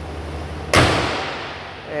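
Pickup truck hood slammed shut: one sharp bang about three-quarters of a second in that rings out and fades over about a second. A steady low hum from the idling 6.0-litre V8 runs under it.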